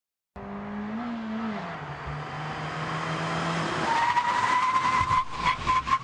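Mini car driving with engine and road noise, starting suddenly: the engine note rises, then drops about a second and a half in, and a high whine climbs steadily through the second half, with a few sharp clicks near the end.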